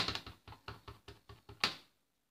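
A clear acrylic stamp block being tapped quickly and repeatedly on an ink pad to ink the stamp, about seven light taps a second, stopping sharply near the end.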